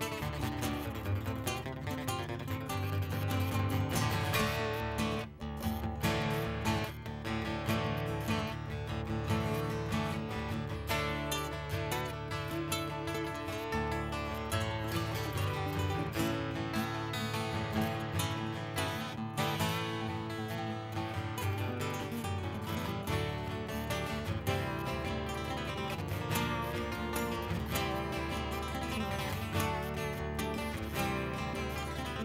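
Two acoustic guitars playing an instrumental duet: a nylon-string classical guitar and a steel-string cutaway acoustic guitar, both picked by hand in continuous interlocking lines.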